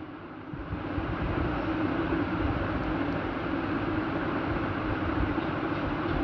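Electric sewing machine running steadily as it stitches a side seam, starting up about half a second in with an even hum.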